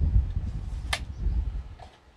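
Low rumbling handling noise near the microphone, with one sharp click about a second in; the rumble fades out near the end.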